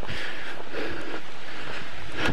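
Steady rushing noise on a handheld camcorder's microphone while walking and jogging along a paved trail, with faint footsteps.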